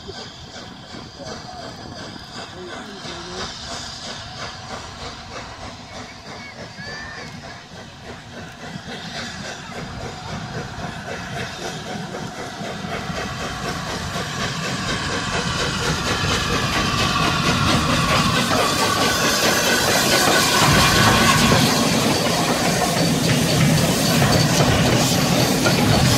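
Steam locomotive 60103 Flying Scotsman pulling away with a train, its exhaust beats and hissing steam growing steadily louder as it draws nearer. Near the end, steam hisses from a locomotive close by.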